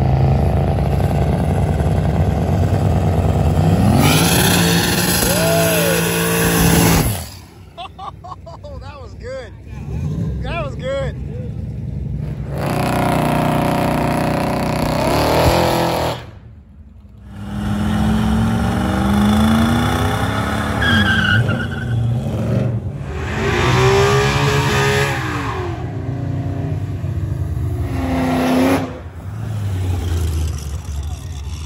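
Cars doing street burnouts one after another: engines revved hard, pitch climbing and falling, over the noise of spinning tyres squealing on the pavement, with the sound breaking off abruptly between clips.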